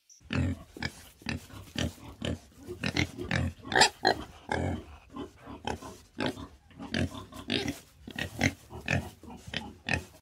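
Wild boar grunting repeatedly: short rough grunts in an irregular run, two or three a second.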